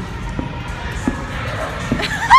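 Music playing over the crowd noise of a busy trampoline park, with three soft thumps under a second apart from someone bouncing on a trampoline.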